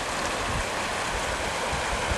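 Shallow creek flowing over stones through a riffle: a steady rush of water.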